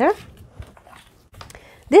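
A woman's voice at the start and again near the end, with a quiet stretch between of faint rustling and light taps from a folded paper page being handled and pressed by hand.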